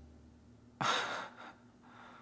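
A man's short breathy laugh: one sharp exhale about a second in, then a softer second breath.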